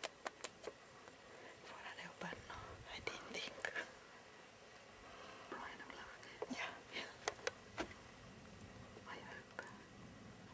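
People whispering softly, broken by several sharp clicks: a quick run of them at the start and three more about seven seconds in.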